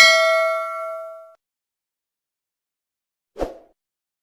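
Notification-bell sound effect: a single bright ding that rings on several pitches and fades out over about a second, as the bell icon is clicked. A brief soft pop comes about three and a half seconds in.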